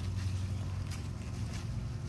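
Steady low mechanical hum under a few faint, short snaps of bean pods having their tips broken off by thumb during picking.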